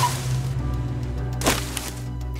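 Comedy sound effect of a car running over a tree: a whoosh fading out, then a single sharp wooden crack about one and a half seconds in, over a low, steady music bed.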